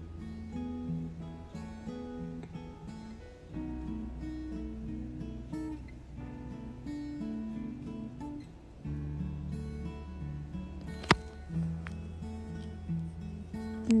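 Background music on acoustic guitar, plucked and strummed over a steady bass line. A single sharp click, the loudest moment, comes about eleven seconds in.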